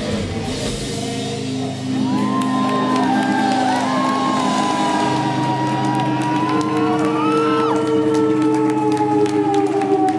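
Live rock band letting a sustained chord ring out at the end of the song, with whoops and shouts from the crowd over it.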